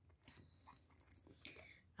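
Near silence with faint handling ticks and one short click about one and a half seconds in, as a plastic bottle of red palm oil is being uncapped.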